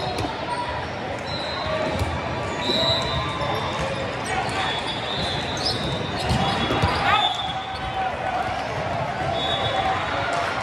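Indoor volleyball play in a large, echoing hall: sharp smacks of the ball being served and hit, with a steady chatter of many players and spectators and short high-pitched squeaks.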